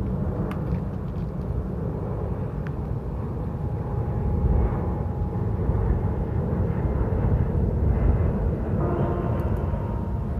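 Outdoor waterfront ambience dominated by a steady low rumble, with a few faint sustained tones coming in near the end.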